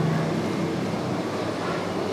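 Steady low rumble and hiss of building background noise, with a low hum in the first half second.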